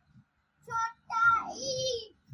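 A young girl calling out letter names in a sing-song chant as she hops from square to square: a short call about two-thirds of a second in, then a longer, drawn-out call whose pitch falls near the end. Faint low thuds sound in the gaps between the calls.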